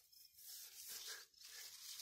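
Near silence with faint rustling of tomato foliage.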